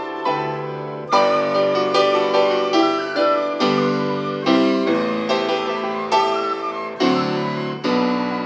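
Piano playing slow, gentle chords, each struck roughly once a second and left to ring and fade.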